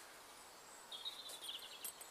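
A bird singing a short, rapid, high-pitched trill about a second in, against a quiet outdoor background.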